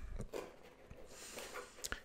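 Faint handling of an open cardboard box: a soft rustle, then a light click near the end as a hand reaches into it.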